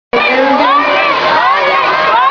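A large audience screaming and cheering, many high voices overlapping at once.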